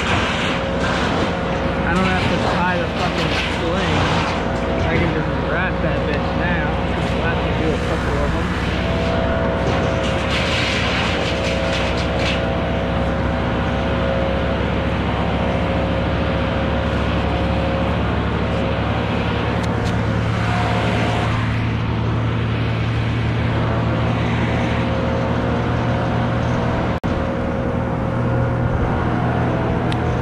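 An engine running steadily at a constant speed, with a held hum.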